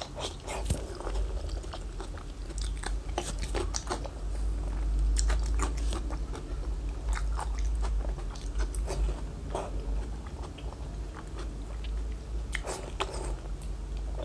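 Close-miked biting and chewing of glazed pork belly, with irregular sharp clicks and wet mouth noises, heaviest in clusters about three seconds in, around seven to nine seconds, and near the end.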